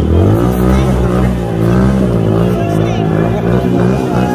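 A motorbike or scooter engine being revved over and over, its pitch rising and falling in quick waves, with voices of the crowd around it.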